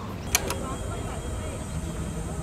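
Outdoor café ambience: diners' voices chattering in the background over a low hum. Two sharp clicks close together come just before it, near the start.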